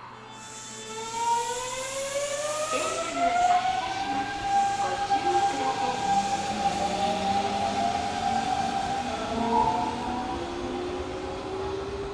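Hanshin 5500 series electric train pulling away from a station, its traction motors whining in several tones that climb in pitch as it accelerates, over the running noise of the wheels on the rails.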